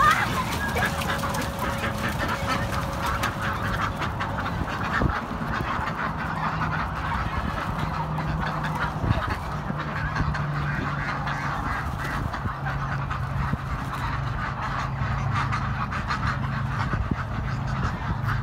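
A flock of white domestic ducks quacking continuously, many calls overlapping. A low steady hum joins in underneath from about six seconds in.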